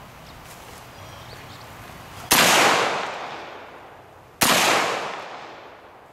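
Two shots from an Auto Ordnance M1 Carbine firing .30 Carbine rounds, about two seconds apart. Each is a sharp crack followed by a long fading echo.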